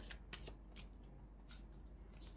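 Faint shuffling of a tarot deck in the hands: a few soft card flicks and slides.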